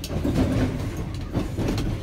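Class 319 electric multiple unit running over pointwork, heard from on board: steady running noise with a few sharp wheel clicks over the rail joints and crossings.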